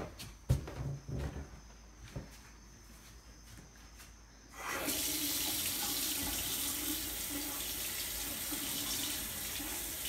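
A few knocks, then about four and a half seconds in a bathroom sink faucet is turned on and runs steadily, its stream splashing over a small toy pig being rinsed clean of mud.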